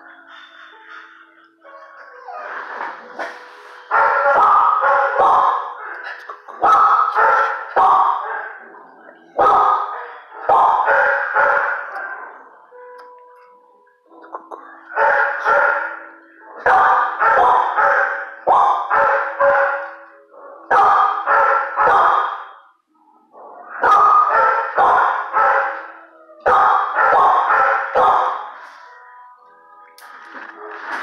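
Dogs barking in a shelter kennel block, in repeated loud bouts every couple of seconds with a short lull about halfway through.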